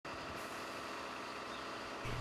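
Faint, steady street background noise with a low vehicle hum.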